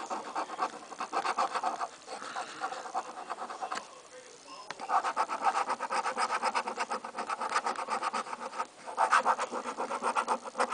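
A coin scratching the coating off a paper scratch-off lottery ticket in quick back-and-forth strokes, about seven a second. There is a brief pause a little before halfway, and another short one near the end.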